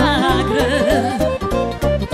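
Romanian folk music played live: a woman singing a richly ornamented melody, with accordion, over a steady fast beat.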